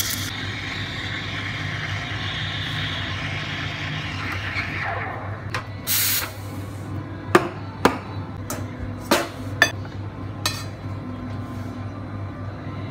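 Espresso machine steam wand hissing in milk, the hiss falling in pitch and dying away about five seconds in, then a short burst of steam hiss. After it come several sharp knocks and clinks of metal and crockery, over a steady low machine hum.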